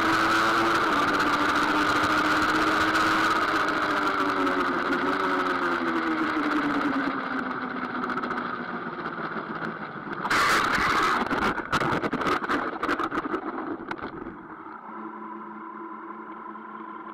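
Triumph Daytona 675 three-cylinder engine running at speed on track with wind rush, its pitch falling as the bike slows into a corner. About ten seconds in comes a sudden loud burst and a run of knocks and scrapes as the bike goes down: the front tucks with the throttle closed and the weight on the front wheel. A quieter steady engine note follows.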